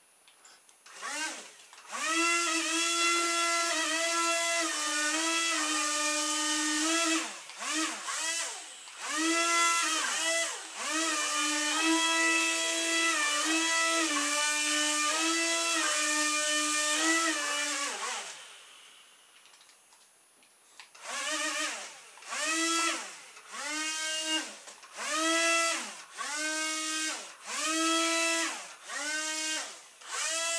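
Small electric motors driving the propellers of a styrofoam-tray RC airboat, whining as they spin up, running steadily with shifts in pitch, then cutting off a little past halfway. After a short pause the motors are pulsed in short bursts about once a second, each rising then falling in pitch.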